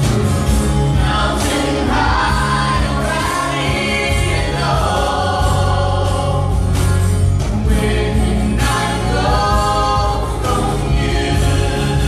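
Live worship band performing a song: several voices singing together over keyboard, bass and a steady percussion beat.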